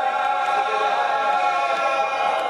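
Many men's voices chanting together in unison, on long held notes.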